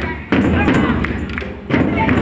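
A drum struck in a slow, steady beat, one heavy thump about every second and a half, with voices over it.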